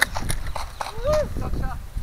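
Quick, uneven knocks and thuds, about five or six a second, from running footsteps and the jostling of a body-worn camera. A short shouted call cuts in about a second in.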